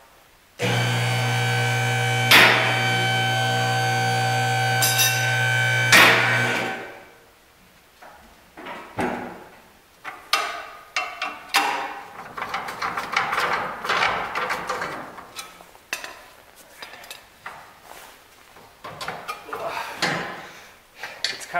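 A steady machine hum starts suddenly, runs for about six seconds with two sharp metallic clanks, and dies away. Then come irregular metal knocks, clicks and scrapes of tools and suspension parts as the C3 Corvette's front coil spring, now mostly off its pressure, is worked loose.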